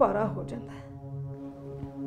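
Background score: a low, steady sustained drone held on one pitch under the dialogue.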